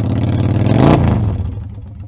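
Motorcycle engine sound rising in pitch to a peak about a second in, then falling away and fading, like a bike revving past, as the Evel Knievel Stunt Cycle toy wheelies by.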